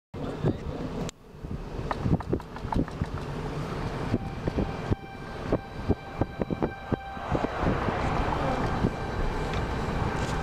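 A car driving, heard from inside the cabin: a steady road and engine rumble with frequent short, sharp knocks and thumps.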